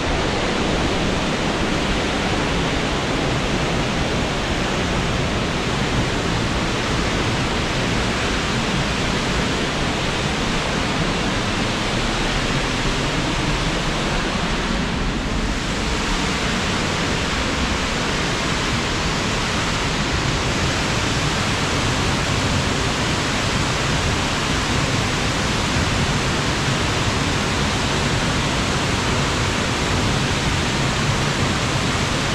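Waterfall: a steady, dense rush of heavily falling water.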